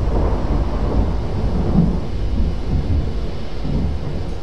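Thunder sound effect: a long, steady low rumble.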